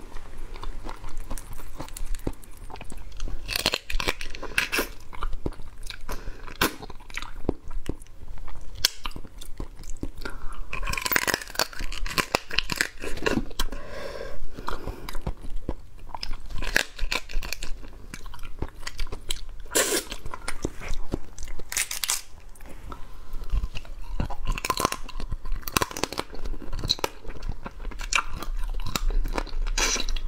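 Close-up eating sounds of a crab being bitten and chewed: its shell and legs crack in many sharp, irregular crunches, with chewing in between.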